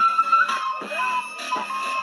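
A large group of children blowing recorders together: several shrill held notes sounding at once and clashing, shifting in pitch now and then.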